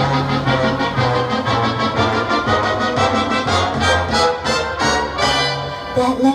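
Instrumental break in a recorded backing track: band music with a bass line stepping about twice a second under regular accents, and no singing.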